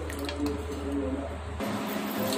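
A metal spoon stirring and sloshing spiced hing water in a stainless steel bowl, with a few light clicks of spoon on steel. A steady low hum underneath cuts off suddenly near the end.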